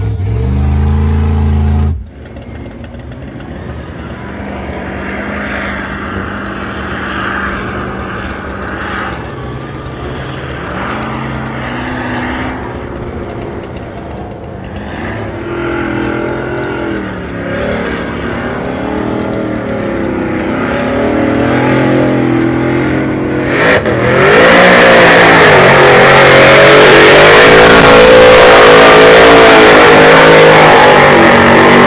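Mud truck engine revving hard, its pitch rising and falling over and over as it churns through a mud pit. About 24 seconds in it gets much louder, at high revs with a heavy rushing noise over it. In the first two seconds a deep engine note heard from inside a truck cab cuts off suddenly.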